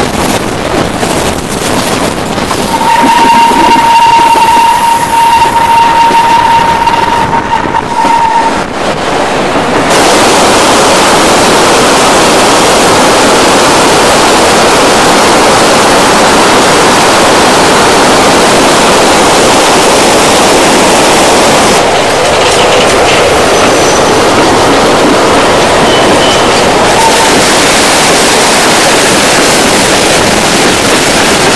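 A passenger train running, heard from on board, with a steady high-pitched squeal lasting about five seconds. From about ten seconds in, this gives way to the loud, even rush of a fast river in flood.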